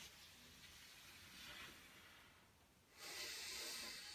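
Faint controlled breathing of a man doing a Pilates teaser: a soft breath-out, then a louder hissing breath-in starting about three seconds in.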